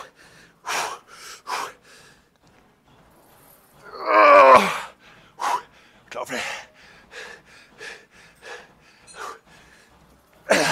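A man's forceful, rapid breaths of exertion during heavy hack squat reps, with one loud strained groan about four seconds in that falls in pitch.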